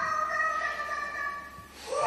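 A woman's high-pitched scream from a VR reaction clip, rising sharply at the start, held for about a second and a half, then fading out.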